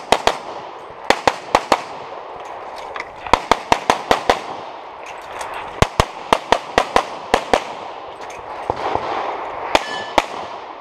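Handgun fired in rapid pairs and fast strings of shots, with short breaks between the strings, a couple of dozen shots in all.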